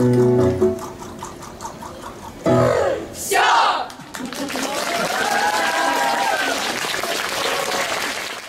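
A piece of choral music with instrumental accompaniment ends on a held chord in the first second, a voice is heard briefly, and then the audience applauds, with a few voices over the clapping.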